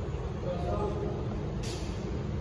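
Steady low rumble of a distant MTR Tsuen Wan Line train and the surrounding rail yard, with a short hiss near the end.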